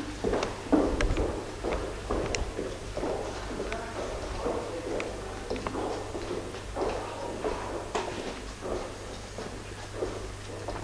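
Footsteps on a wooden plank floor, irregular knocks about once or twice a second, over a steady low hum.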